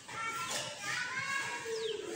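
Children's voices calling out in the background, over the soft rubbing of a duster wiping a whiteboard.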